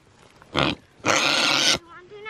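American Guinea Hog calling twice at the fence: a short call about half a second in, then a longer one lasting most of a second.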